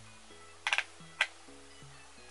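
Two sharp clicks from handling a plastic eyeshadow palette: a quick little rattle of taps about two thirds of a second in, then a single click half a second later. Soft background music with slow, steady low notes plays throughout.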